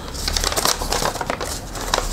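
Paper rustling and crackling as printed sheets are handled: a dense run of quick, sharp crackles.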